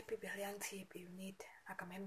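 A woman speaking quietly, close to the microphone.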